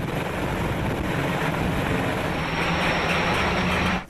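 Steady engine noise, like a vehicle or aircraft running, with a constant low hum; it cuts off abruptly at the end.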